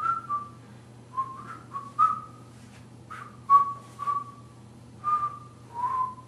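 A man whistling an idle tune of short notes, in a few brief phrases with pauses between, as someone waiting impatiently in a line.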